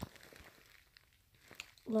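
A pause in talking: a single sharp click at the start, then faint rustling and small ticks from a phone being held close. A boy's voice starts again right at the end.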